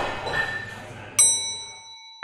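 Light clinks of café tableware, then a sharp ding about a second in that rings on with several clear tones and slowly fades.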